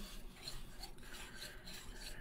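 Faint, irregular rubbing of thread being wound by hand around a woodwind joint's tenon, the thread drawn across the joint and fingers brushing over it.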